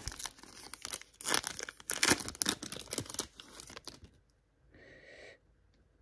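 A trading-card pack's foil wrapper being torn open and crinkled by hand, a dense run of crackles that stops about four seconds in.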